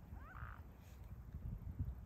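Wind rumbling on the microphone, with one short high squeal that slides up and down about half a second in.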